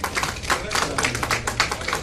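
A small group of people applauding, a fast run of uneven hand claps.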